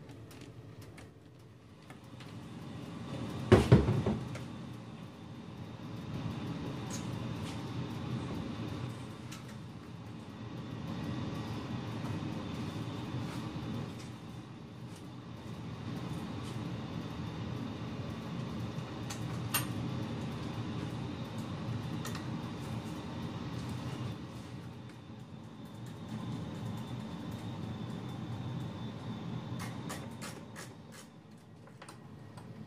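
Low rumble of a basement furnace running, swelling and easing every few seconds, with a heavy knock about three and a half seconds in and a sharp click near the middle.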